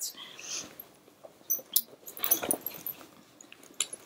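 Faint rummaging in a handbag: soft rustles and small clicks of items being moved about, with a brief louder cluster of handling noise about two seconds in.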